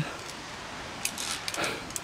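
Faint steady outdoor hush with a few soft clicks and a brief rustle between one and two seconds in.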